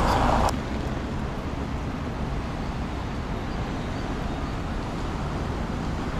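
Steady outdoor city ambience: an even background of street and traffic noise with a low rumble, with no single distinct event. It settles in about half a second in, when the louder sound before it cuts off.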